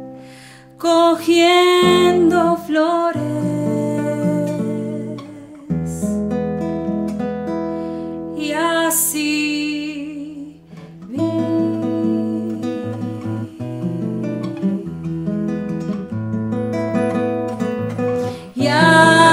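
Nylon-string classical guitar played in a Colombian Andean song, with a woman's voice singing over it in places, around a second in and again about halfway through.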